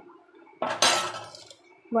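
A metal spoon clattering against a pressure cooker pot as ginger-garlic paste goes into frying onions: one sudden, loud noisy burst about half a second in that fades over about a second.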